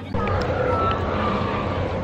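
Steady outdoor background noise from a walking crowd: a low rumble and hiss with faint scattered voices.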